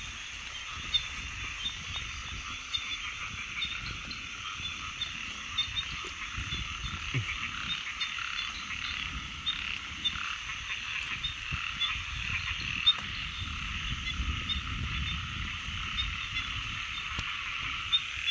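A chorus of many frogs calling at once, a dense steady mass of overlapping calls, with low rustles and a few knocks close by.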